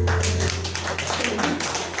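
Hand clapping from the congregation, many quick claps, over a sustained low bass note from the praise band.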